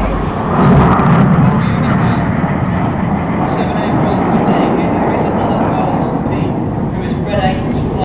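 Jet aircraft of a flying display passing, a loud rushing roar that swells about half a second in and then carries on steadily.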